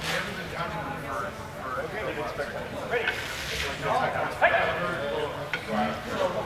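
Indistinct talking from several people in a large indoor sports hall.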